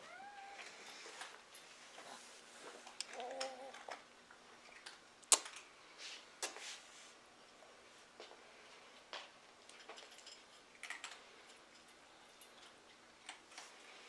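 A domestic cat meowing briefly twice, once at the start and again about three seconds in, with a few sharp clicks in between.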